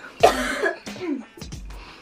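A woman coughing to clear baby powder she breathed into her throat: one strong cough about a quarter second in, then a few weaker ones.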